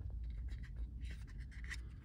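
Fingers turning and rubbing a small HUK Telematik Plus sensor unit in the hand: faint scattered scratchy handling sounds over a low steady rumble.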